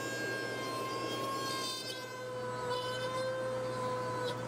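A Dremel rotary tool cutting an opening in a wooden cabinet panel: a steady high-pitched motor whine that wavers slightly in pitch as the bit works through the wood.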